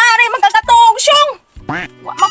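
A high, wavering voice-like sound in quick bursts with no clear words, breaking off briefly near the end.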